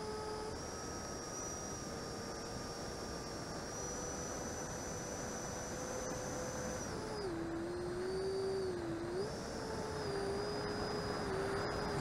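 90mm electric ducted-fan model jets in flight: a steady fan whine over a rushing hiss. About seven seconds in, the whine drops in pitch as the throttle eases, then rises part way again and holds.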